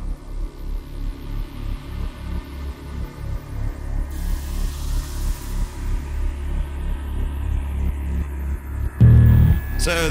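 A metal band's song winding down to a low pulsing drone from the instruments, about three pulses a second, with a louder low hit near the end.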